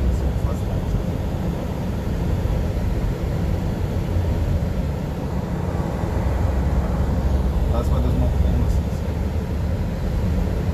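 Steady low road rumble and engine noise inside the cabin of a vehicle moving along the road.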